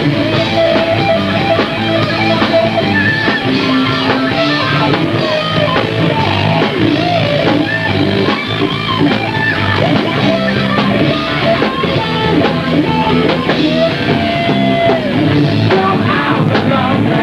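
Loud rock music from a band, with guitar and drum kit playing.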